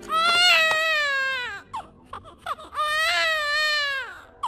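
A cartoon cat character bawling: two long, exaggerated wails, the first sliding down in pitch, with a few brief sounds between them.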